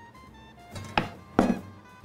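Light background music, with two sharp knocks in quick succession about a second in, from kitchen work as eggplant pieces are pressed into dough on a metal baking tray.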